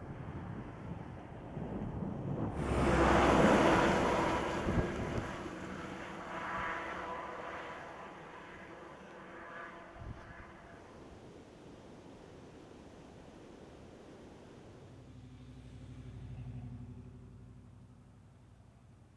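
A pickup truck drives past on a wet, slushy road, and the rush of its tyres and engine builds to a peak about three seconds in, then fades. A softer steady rush follows. Near the end the low hum of a vehicle engine in street traffic rises and falls.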